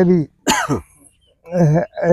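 A man gives one short, sharp cough about half a second in, between stretches of speech.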